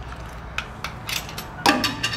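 Coins being fed into a snack vending machine's coin slot: a run of small clicks and rattles from the coin mechanism, then a louder clatter near the end.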